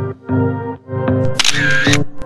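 Background music with a steady beat, and near the end a camera shutter sound effect lasting about half a second.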